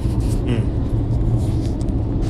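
A steady low rumble, with a short 'mm' from a man about half a second in.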